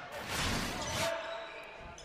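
Volleyball rally in a gym: the ball struck a couple of times, with players' calls, echoing around the hall.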